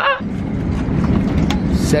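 Steady low rumble inside an airliner cabin during boarding, cutting in suddenly just after the start.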